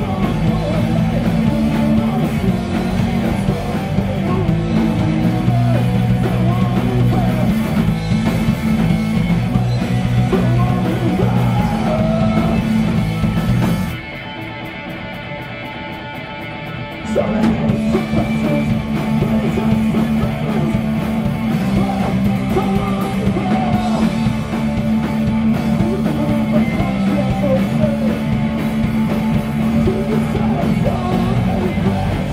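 A punk rock band playing live: distorted electric guitars, drum kit and vocals, loud and close. About halfway through, the band drops out for about three seconds, leaving a thinner, quieter sound, then the full band comes crashing back in.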